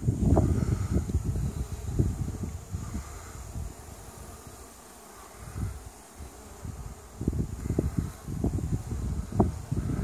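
Honey bees buzzing around busy hive entrances. Under it is a low rumble with short knocks from wind and handling on the microphone, easing off around the middle and picking up again near the end.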